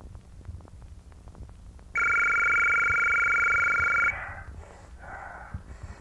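A telephone ringing once, a steady two-tone ring lasting about two seconds that starts about two seconds in and stops abruptly, over a faint low rumble.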